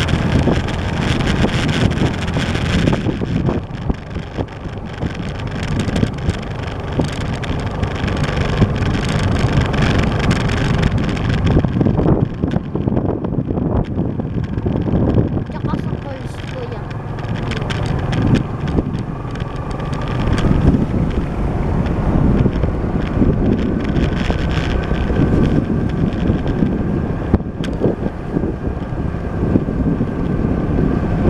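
A vehicle's engine running under way, with wind buffeting the microphone throughout; the loudness rises and falls with the gusts.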